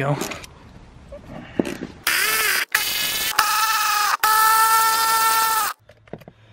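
Cordless impact driver hammering on a 13 mm seat-mounting bolt in four bursts, the first rising then falling in pitch. The bolts are on tight.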